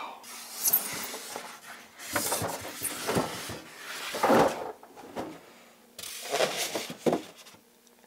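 Foam packing and cardboard being handled as a computer is unboxed: irregular rubbing, scraping and light knocks, loudest about four and a half seconds in, with a quieter stretch near the end.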